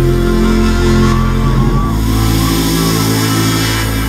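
Live band music recorded from the audience: loud, held low chords over a deep bass drone, with a faint wavering higher tone in the middle.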